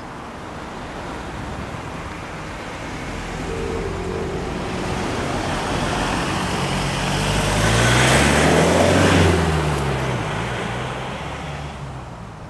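A motor vehicle passing close by on a road. Its engine and tyre noise build up steadily, are loudest about eight to nine seconds in, then fade as it moves away, the engine note dropping as it recedes.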